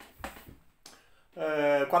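A man's voice with a short pause: a couple of faint clicks in the pause, then a long held vowel as he starts speaking again.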